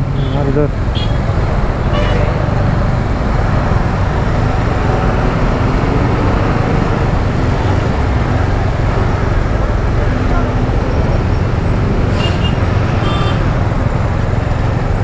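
Jammed motorcycle and scooter traffic: a steady engine and road rumble as the bikes idle and creep forward, with a few short horn toots near the end.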